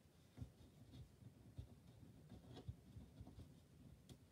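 Near silence, with faint, scattered soft taps and rustles of hands handling cardstock on a tabletop.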